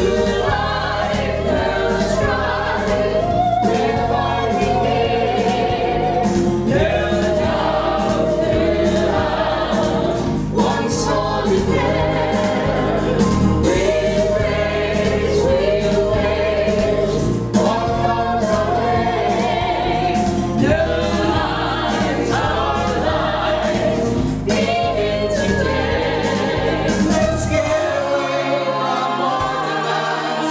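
A mixed ensemble of men's and women's voices singing a musical-theatre chorus number in unison and harmony, with instrumental accompaniment and a steady beat. Near the end the low accompaniment drops away, leaving mainly the voices.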